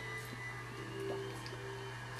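Low steady electrical hum from the powered-up CNC control cabinet, with a faint steady tone coming in about a second in.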